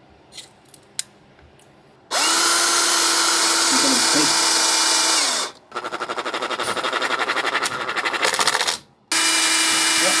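Makita cordless drill drilling holes in the boat's wooden bilge floor to mount a bilge pump. After a few small handling clicks, it runs at a steady speed for about three seconds. It then runs again with a fast rattling pulse, stops briefly, and starts up steady again near the end.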